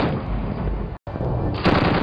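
Mounted machine gun firing, a dense run of shots with a split-second break in the sound about halfway through.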